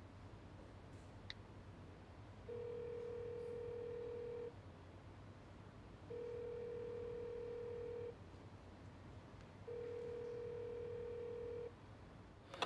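Telephone ringback tone on an outgoing call: three long, steady beeps of about two seconds each, evenly spaced, while the call waits to be answered. A faint click comes before the first beep.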